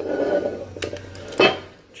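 Handling noise from parts moved on a workbench: a brief scrape, then two knocks, the second and louder one about a second and a half in.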